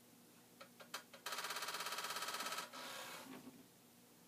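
A few keyboard key clicks, then a Commodore 5.25-inch floppy disk drive's read/write head rattling rapidly against its end stop, about fourteen knocks a second for a second and a half, the 'machine gun' head knock of these drives, then a fainter noise dying away. It comes while the drive is failing to step its head normally.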